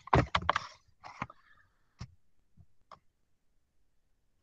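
A cluster of short clicks and knocks in the first second, then single clicks about a second apart.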